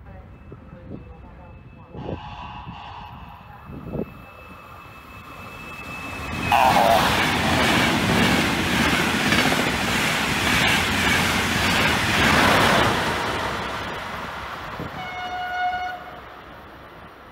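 Locomotive-hauled express passenger train passing through the station at speed: a sudden loud rush of wheel and air noise about six seconds in, lasting about six seconds and then fading. A short horn blast sounds near the end.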